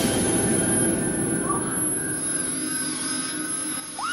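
A steady, dense drone from a film-score sound design, with thin high ringing tones above it. It dips in level just before the end.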